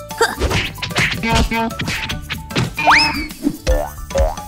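Children's cartoon background music with comic sound effects: a quick rising whistle-like glide about three seconds in, and a thump near the end.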